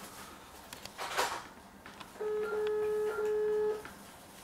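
A single steady telephone signal tone, one flat mid-pitched beep lasting about a second and a half, starts a little after two seconds in. It follows a brief soft rustle about a second in.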